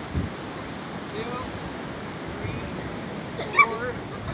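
Steady outdoor noise of wind buffeting the microphone over ocean surf, with faint distant voices and a short, sharp call near the end.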